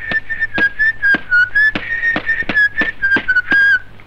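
A high whistle sounded in quick, rhythmic toots, about three to four a second, each with a sharp onset and a slightly wavering pitch.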